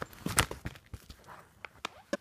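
Handling noise: a few light taps and knocks, the loudest about half a second in, as a wooden slice ornament on a string is lifted out of a plastic-wrapped pet stocking.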